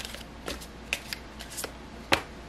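A deck of round cards being shuffled and handled by hand, giving about six short, sharp card snaps and taps spread through the two seconds.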